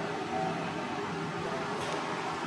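Steady background room noise in a large indoor space: an even hiss with a faint low hum and no distinct events.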